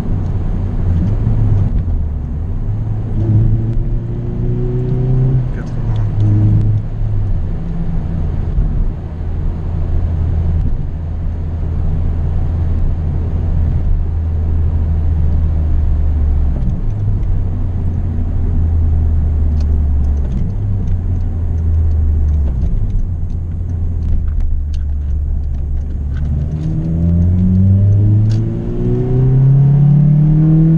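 Honda Civic Type R EP3 with an HKS exhaust line, heard from inside the cabin while driving: a steady low engine drone that rises in pitch as the car accelerates, briefly about three seconds in and again near the end.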